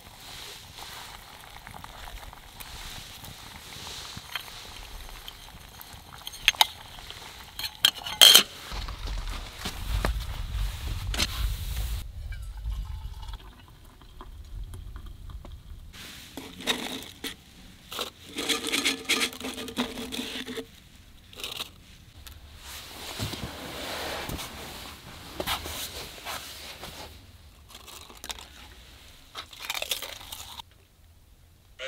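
Camp cookware being handled over an open fire: clinks and scrapes of a metal kettle and utensils, with a few sharp knocks about six and eight seconds in. A low rumble follows briefly, and there are short scraping sounds later on.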